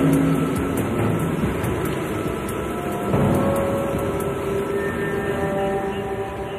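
Continuous heavy rushing rumble of iron ore being dumped from a grab crane onto a steel grate above a conveyor belt, with background music of held notes; the rumble surges again about three seconds in.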